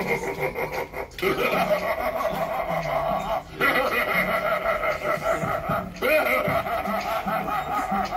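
Giant clown animatronic playing a long recorded laugh, in phrases of a couple of seconds broken by short pauses.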